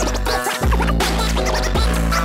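Vinyl scratching on a portable turntable over a beat, the scratch strokes chopped in and out with a Raiden Fader RXI-F1 crossfader. There is a short break in the bass about half a second in.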